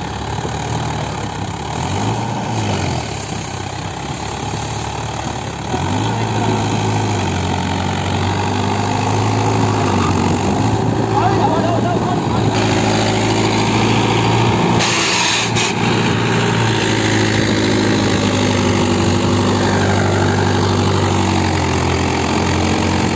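Mahindra Yuvo tractor's diesel engine running, picking up speed and loudness about six seconds in and then holding a steady, higher note under load as it hauls a loaded grain trailer through soft, muddy field.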